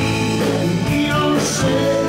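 Live rock band playing: electric guitars, bass and drums with a lead singer's voice, loud and steady.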